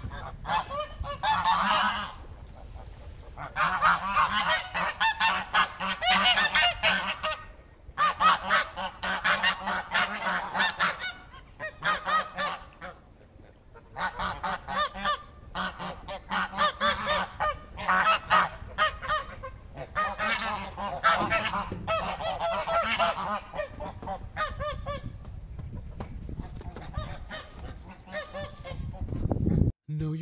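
A flock of domestic geese honking, many birds calling at once in loud bouts separated by short lulls; the calling thins out and grows quieter over the last few seconds.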